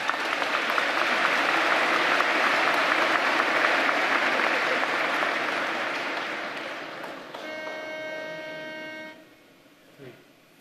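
Audience applauding, fading away over about seven seconds. Then a steady pitched note is held for about two seconds.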